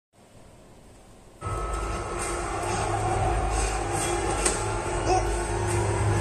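A film soundtrack playing through home-theatre loudspeakers and heard in the room. After faint room tone it comes in suddenly about one and a half seconds in: music over a deep low rumble.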